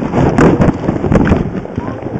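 Dense crackling and scraping noise on a helmet-mounted camera as the rider glides over hard-packed snow, with sharp irregular pops throughout.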